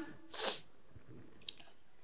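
A person's short breathy exhale about half a second in, then a faint click near the end; otherwise quiet room tone.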